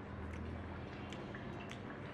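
Chopsticks lifting sauced chicken feet from a small ceramic bowl: a few light clicks and soft wet sounds, over a steady low hum.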